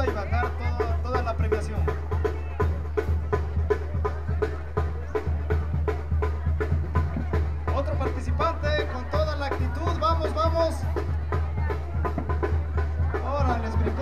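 Outdoor brass band music with a steady drum beat, mixed with the voices of a crowd.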